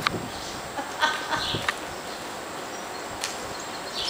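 Soft, irregular hoofbeats of a horse moving over dirt arena footing, with a few faint clicks.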